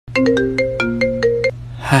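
Mobile phone ringtone: a short melody of about eight plucked notes that stops after about a second and a half, just before a voice answers.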